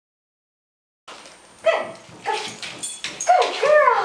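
Silence for about the first second, then a dog giving a run of short, high-pitched yips and whines that rise and fall in pitch.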